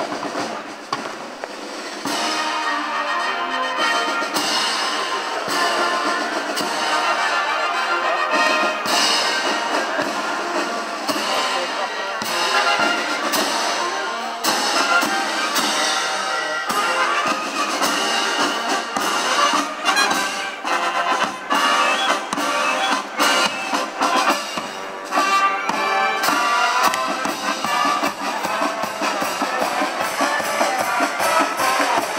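A military marching band of brass and drums playing a march, starting about two seconds in, with a steady drum beat under the brass.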